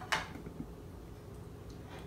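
A single short knock just after the start, then quiet room tone with a faint low hum and a couple of faint ticks.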